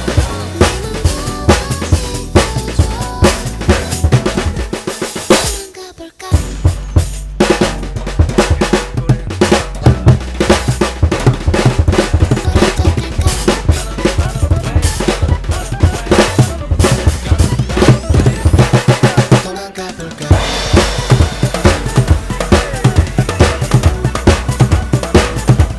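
A drum kit with Istanbul cymbals played busily in a jazz style over the song's music, with snare, bass drum, rimshots and cymbal work. The playing breaks off briefly about six seconds in, then the groove comes back in full.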